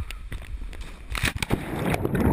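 A sharp knock at the start, then air rushing past a head-mounted GoPro in its waterproof case during a cliff jump. About one and a half seconds in comes the splash into the river, followed by dense underwater churning.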